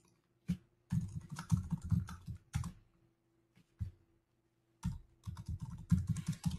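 Typing on a computer keyboard: a run of quick keystrokes, a pause with a few single taps, then more typing near the end.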